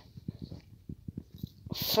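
Quiet, irregular low thumps and rubbing from a handheld phone being moved while it films, then a sharp in-breath near the end.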